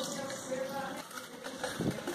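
Hot water poured from a small saucepan into cake batter in a bowl, then a wire whisk stirring and knocking against the bowl near the end.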